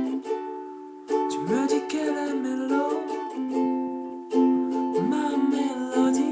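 Kala ukulele strummed in chords, a chord left to ring and fade through the first second before the strumming picks up again. A man's voice sings wordless sliding notes over it.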